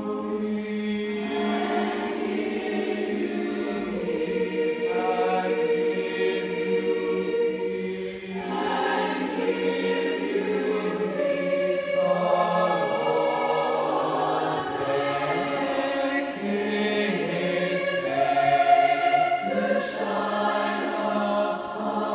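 Mixed high school choir singing a cappella in held, sustained chords that change every few seconds, in a large reverberant church.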